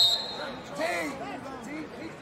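A referee's whistle gives one short, high, steady blast at the end of the period, ending about half a second in. Scattered shouting voices from the crowd follow.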